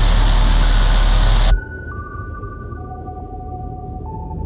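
Deathstep electronic music: a dense, distorted bass-heavy section cuts off abruptly about a second and a half in, leaving a break of several held high synth tones that come in one after another over a low rumble.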